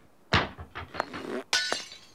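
A woman crying: short, sharp sobbing breaths in uneven bursts, the strongest just after the start.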